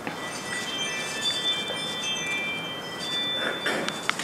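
Several high ringing tones, like a chime, sounding together and overlapping for about three and a half seconds before stopping.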